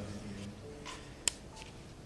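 A pause in a man's speech at a microphone: a low hum of room tone with a faint trace of his voice at the start. A single sharp click comes a little over a second in.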